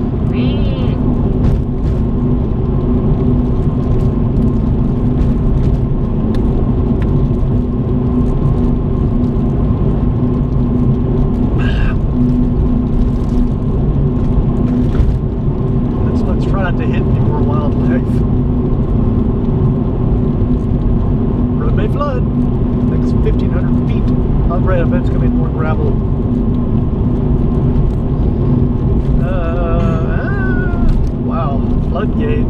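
Steady engine and road drone inside a car cruising at highway speed at night. A voice comes through faintly now and then over the drone.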